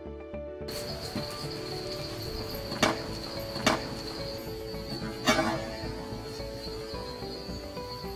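Three sharp knocks of a knife on a wooden chopping board, about three, three and a half, and five seconds in, as garlic cloves are crushed, over background music and a steady high insect chirr.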